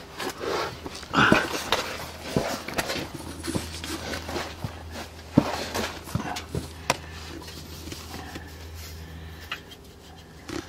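Handling and shuffling noises with scattered clicks and knocks, over a steady low hum.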